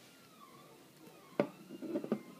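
Handling of a 3D-printed plastic pistol: one sharp plastic click about a second and a half in, then a few softer clicks and rattles of its parts near the end.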